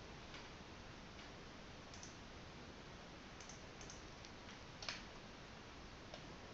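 Near silence: faint room tone with a handful of soft computer clicks from mouse and keyboard use, the clearest near the end.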